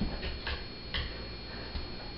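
A few light, irregularly spaced clicks and taps: a dog's nails and paws stepping on a low wooden platform and the tile floor as it moves its hind feet around the perch.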